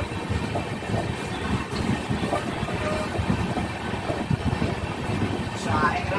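Running noise of a passenger train coach heard from its open door: a steady rumble of steel wheels on the rails with irregular clattering knocks.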